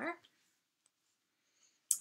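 A woman's voice trails off, then a pause of near silence with one faint tick, and her voice starts again at the very end.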